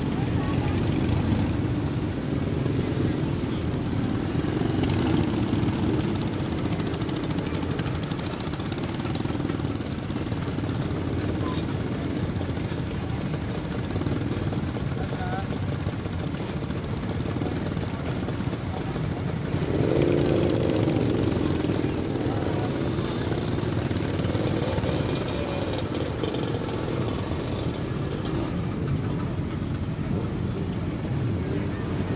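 A slow procession of many motorcycles riding past, their engines running together in a steady mixed drone, with a louder engine passage about twenty seconds in.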